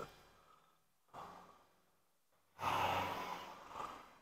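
A man breathing close to the microphone: a faint short breath about a second in, then a longer, louder breath out lasting over a second.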